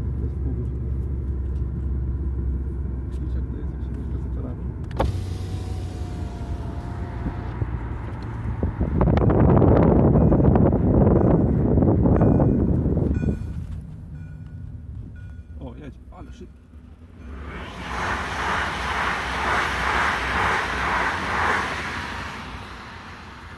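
Car driving with steady engine and road rumble, then a loud rushing noise for a few seconds in the middle. Near the end a level-crossing warning bell rings in fast, evenly repeated strokes as the car reaches the crossing.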